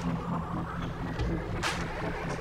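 Instrumental stretch of an electronic dance track without vocals: a steady bass line under a noisy, rumbling backing, with one sharp percussive hit near the end.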